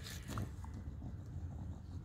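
English bulldog snuffling with its face pushed into loose soil, with a short burst of scraping in the dirt just after the start.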